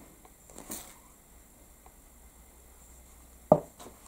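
Faint dabbing and rubbing of an applicator pad on an inked sheet of parchment paper, with a few small ticks. About three and a half seconds in comes one sharp knock, a small glass dropper bottle set down on the table.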